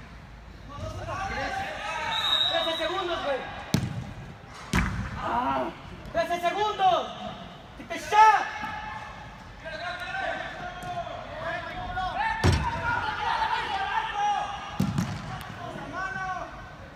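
A soccer ball struck several times on an indoor pitch, sharp thuds echoing around a large hall, amid men's shouts from players and spectators.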